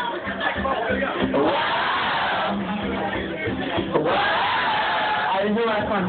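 Audience singing a long drawn-out "whoa" along with a strummed acoustic guitar, the held notes rising and falling and starting again about four seconds in.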